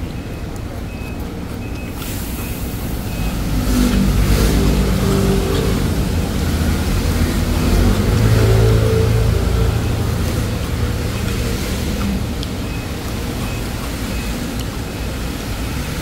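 A motor vehicle's engine going past: a low rumble that swells from about three seconds in, is loudest around eight to nine seconds, then fades away, over a steady background hiss.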